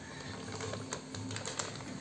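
Wet plastic bag crinkling in many small, quick clicks as it is handled and lowered into a glass aquarium.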